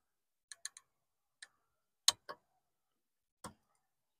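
Light clicks and taps of a circuit board being handled as an electrolytic capacitor is pulled free of it: a quick run of three small clicks near the start, then scattered single clicks, the sharpest about two seconds in.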